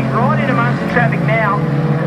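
Junior sedan race cars' engines running steadily as they lap a dirt speedway, under a commentator's voice.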